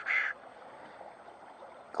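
A brief raspy animal call right at the start, then faint steady background noise.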